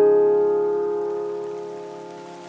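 Soundtrack music: a piano chord struck at the start rings on and slowly fades, with a faint hiss of rain beneath.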